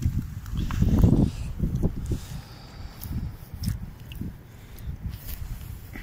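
Strong wind buffeting the microphone in an uneven low rumble, loudest about a second in, with a few light knocks and rustles.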